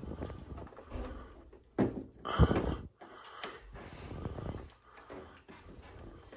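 Fingernails picking and scraping at an adhesive warning sticker on the plastic casing of a ductless mini-split indoor unit, the label peeling away in short tugs, with a few louder scratches about two seconds in.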